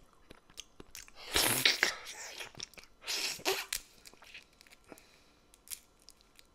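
Close-miked mouth sounds of eating a baked "dynamite" mussel from its shell: soft wet chewing clicks, with two louder rushing bursts about a second and a half and three seconds in.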